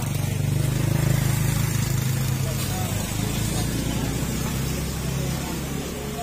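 A motorcycle engine idling steadily close by, a low even drone that eases off slightly toward the end, with people talking in the background.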